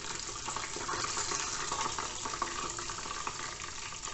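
Potato-starch-coated chicken deep-frying in hot oil in a small saucepan: a steady sizzle with light crackles.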